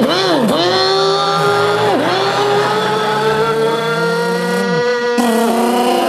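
A car engine imitated with the human voice: a steady hum that drops and climbs back in pitch like gear changes, three times, then shifts abruptly near the end.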